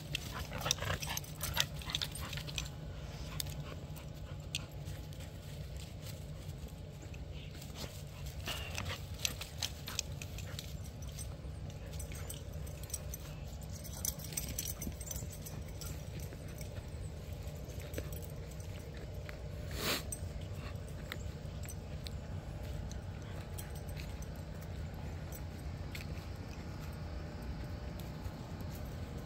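Small dogs playing and running through dry leaf litter: rustling and crackling, busiest in the first few seconds, with occasional dog sounds, over a steady low rumble.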